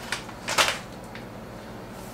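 Two short rustles in the first second, the second louder, as crispy fried onions are shaken from a plastic bag into glass jars, then a faint click and quiet room sound.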